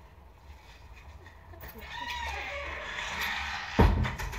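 A stretch of faint, wavering background calls, then a sharp, loud knock just before the end as a hand bumps the phone that is recording.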